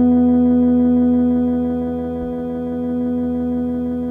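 Ambient post-rock drone: an electric guitar's held notes ringing on steadily through an amp as one sustained, pitched wash. It fades a little about halfway and swells back up.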